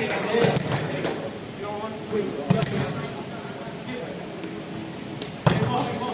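A volleyball thudding three times, about two to three seconds apart, with the loudest thud near the end, echoing in a large sports hall amid players' voices.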